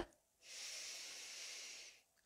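A woman's slow, soft inhalation, a breath drawn in for about a second and a half, starting about half a second in.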